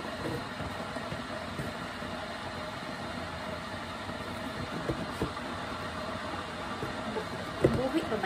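A cake box being handled and opened, giving a few light clicks and a sharper knock near the end over a steady background hum.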